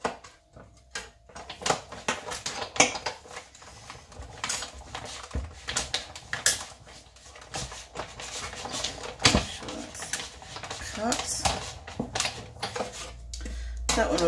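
Manual die-cutting machine being cranked, the clear plastic cutting plates with a metal die and cardstock passing through the rollers with irregular clicks, knocks and plastic clatter.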